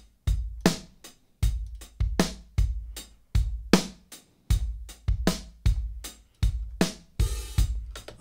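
Acoustic drum kit playing a steady beat of kick and snare hits, with a brief cymbal-like wash near the end. It is a dry close-miked recording run through the UAD Sound City Studios plugin, with its emulated room mics blended in.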